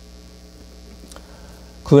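Faint, steady low electrical mains hum through the microphone and sound system during a pause in the talk, with one faint click about a second in. A man's voice starts right at the end.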